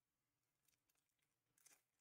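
Near silence, with a faint crinkle of a foil trading-card pack being handled near the end.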